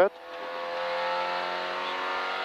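Peugeot 205 F2000 rally car's engine heard from inside the cabin, running at high revs; it grows louder over the first second, then holds steady.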